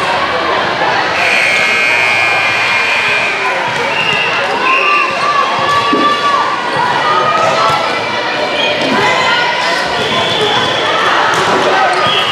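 Volleyball being struck and bouncing off the hardwood court amid players' and spectators' voices, with short squeaks and sharp hits echoing in a large gym.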